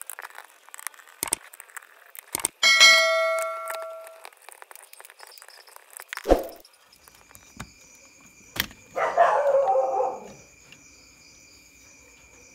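Small clicks and taps of a screwdriver working screws out of a plastic cordless-drill housing. About three seconds in, a loud bell-like chime rings and dies away over a second and a half, and around nine seconds there is a rough burst of scraping and rattling lasting about a second.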